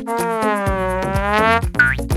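Cartoon-style comedy sound effect: a drawn-out boing-like tone that sags in pitch and rises again, ending in a quick upward zip near the end, over background music with a steady low beat.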